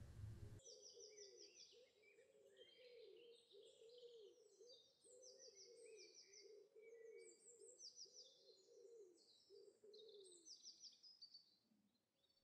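Faint woodland birdsong starting about half a second in: short high chirping trills repeated every second or so, over a steady run of low coos that stops a little before the end.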